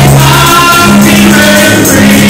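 Gospel choir singing a praise song over instrumental backing, with long held notes over a steady low bass line. The recording is very loud.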